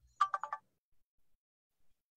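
Short electronic alert chime heard over the call audio: about four rapid beeps at two pitches in under half a second, then quiet.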